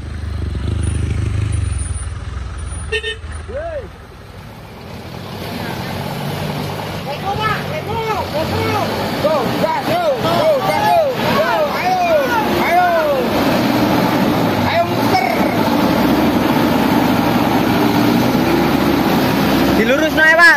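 A heavy truck's engine labouring with a deep rumble as it climbs a steep hill. After a break about four seconds in, many voices call and shout over one another above a running engine.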